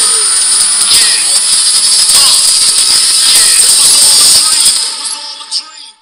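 Movie trailer soundtrack played back very loud: a dense wash of music and sound effects with some dialogue and a thin high whine over it, falling away over the last second and stopping as the playback volume is turned down.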